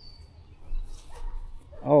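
Quiet outdoor background with a single short, high falling chirp at the start and a faint distant dog bark about a second in.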